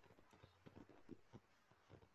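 Near silence over a call's microphone, with faint, irregular soft clicks about four times a second.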